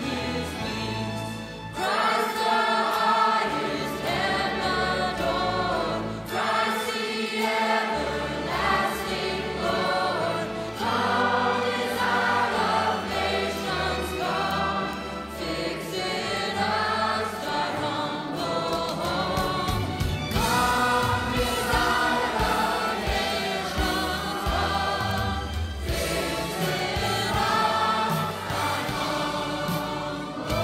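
A choir singing with music, the sung lines rising and falling throughout.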